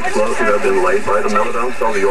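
Speech only: a man reading a radio news bulletin in English, heard over a loudspeaker and sounding thin and cut off at the top.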